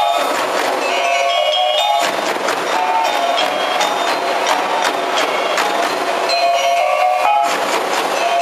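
Live traditional percussion ensemble playing: frame drums and a barrel drum beat a steady rhythm under a melody of ringing notes from tuned metal percussion struck with mallets.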